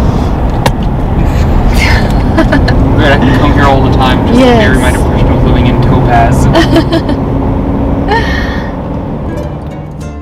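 Steady road noise inside a moving car's cabin, with people talking over it through most of the stretch. It fades down near the end as music comes in.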